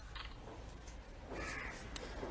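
A faint bird call about a second and a half in, over a steady low background hum.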